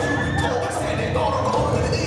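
Dance-mix music with a steady bass beat played over a gymnasium sound system for a dance routine, with high held and gliding tones over the beat.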